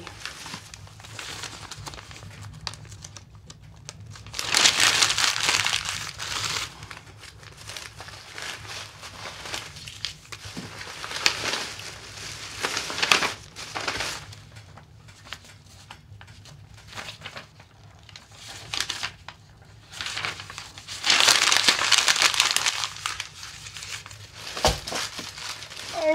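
Paper and plastic trash crumpling and rustling as it is handled and fed into a wood stove, in two louder spells about five seconds in and again after twenty seconds, with scattered clicks and a sharp knock near the end.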